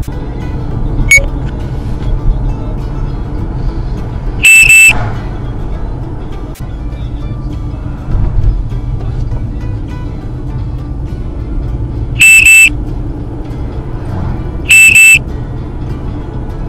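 Lane departure warning of a Jado D230 mirror dash cam sounding a loud double beep three times, about 4.5 s, 12 s and 15 s in, each time the car drifts toward or over the lane line. The beeps sound over the steady road and engine noise inside the moving car.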